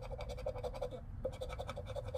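A round scratcher rubbing the latex coating off a lottery scratch-off ticket, in quick, even back-and-forth strokes.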